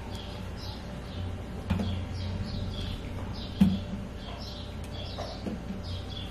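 Small birds chirping over and over in the background over a steady low hum, with two brief knocks, about two and three and a half seconds in.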